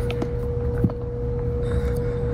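A small precision screwdriver tightening the screws of a pluggable terminal block, giving a few faint clicks, over a steady low hum and a continuous mid-pitched tone.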